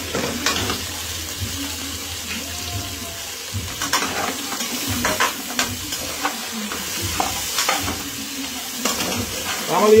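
Chicken pieces with onion, sweet pepper and tomato frying and sizzling in a pot, stirred with a slotted spatula that scrapes and clicks against the pan again and again.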